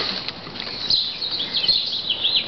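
Birds chirping, with a few short high chirps about a second in, over soft rustling of shredded paper packing being handled.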